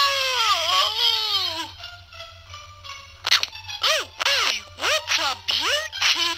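A high-pitched, cartoon-like voice from a Nintendo DSi Flipnote animation's soundtrack: one long wavering wail sliding down in pitch, then after a pause a run of short rising-and-falling cries, about two a second.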